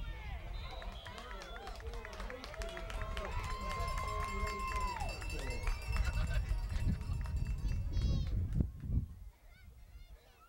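Spectators at a youth football game shouting and cheering together, several voices overlapping, with one long held call in the middle lasting about a second and a half. The shouting falls away near the end.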